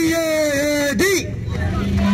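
Protesters chanting an Arabic slogan, led by a man shouting the call, with long drawn-out shouted vowels: one held through the first second, another starting near the end.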